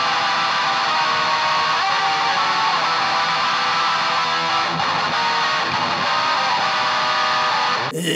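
Electric guitar played through a high-gain amp dialled in for black metal: treble-heavy and saturated, with low end and mids cut and heavy reverb.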